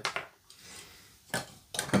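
LEGO plastic bricks clicking and clattering as the pieces of the train set are handled, with a couple of sharp clicks about a second and a half in.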